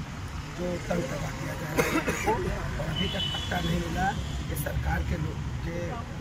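A man talking, over a steady low background rumble, with a short high beep about three seconds in.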